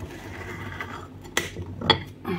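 Two sharp clicks of kitchen utensils about half a second apart in the second half, the second one louder, over faint handling noise while a cake is being cut in its baking form.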